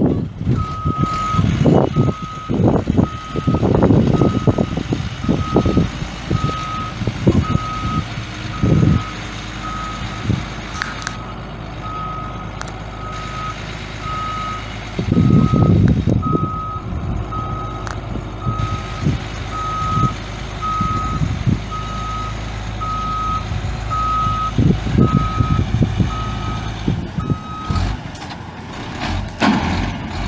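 Reversing alarm on a 1995 Ford L8000 crane truck beeping steadily at about two beeps a second as the truck backs up, stopping near the end. Underneath, the truck's Cummins 8.3-litre six-cylinder turbo diesel runs low, with a few louder low rumbles.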